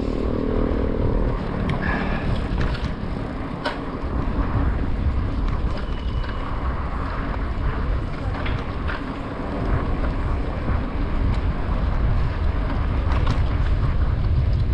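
Wind buffeting the microphone of a bike-mounted camera while riding a mountain bike along a paved street, a steady low rumble with tyre and road noise under it. A low hum sounds in the first second, and a few faint clicks come through.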